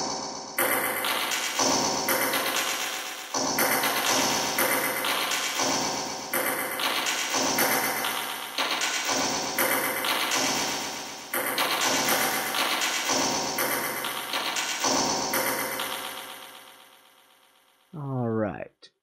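A short musical sound file played back through a heavy digital reverb (Tone.js Reverb, room size set to five): a series of pitched notes, each blurring into a long wash, with the last note fading away slowly near the end.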